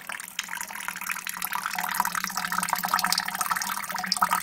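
A thin stream of sweet wort trickling from the mash tun's tube into a pot of foamy wort, splashing and fizzing steadily and growing a little louder partway through. This is the runoff of a homebrew sparge, the wort being collected into the boil kettle.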